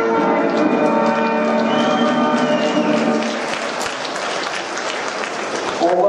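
Music playing over applause, with the clapping growing denser from about halfway through.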